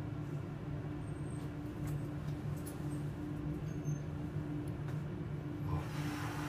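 Steady low hum of a Schindler 7000 high-rise elevator car, with a few faint clicks. A short rush of noise comes in near the end.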